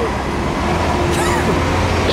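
Street traffic: a heavy road vehicle's engine running with a steady low hum that swells about half a second in, under faint voices.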